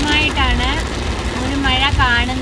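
Heavy rain pelting a car's roof and windshield, with the low rumble of the car's engine and tyres, heard from inside the cabin. A voice rises and falls over it.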